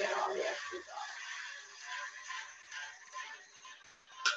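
Electric blender whirring as it whips heavy cream toward soft peaks, the sound fading down toward the end.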